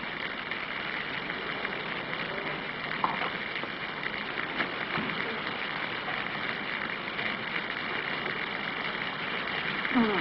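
Steady heavy rain falling on a street, an even hiss with the patter of drops.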